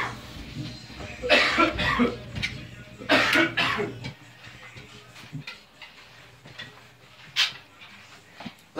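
A person coughing in two rough bursts, about a second in and again about three seconds in, with one short sharp cough near the end.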